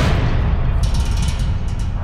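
Dramatic soundtrack boom hit: a sudden low impact that lingers as a deep rumble, with a shimmering high rattle joining about a second in.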